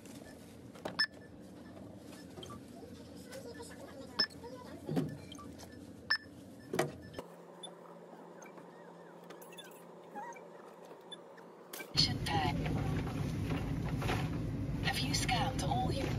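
Self-checkout barcode scanner giving short beeps a few seconds apart as items are scanned, over a low hum. About twelve seconds in, a louder background of shop noise with voices takes over.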